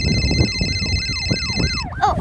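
Electronic siren-like sound: a quick run of falling pitch sweeps, about three or four a second, over a steady high tone that cuts off near the end.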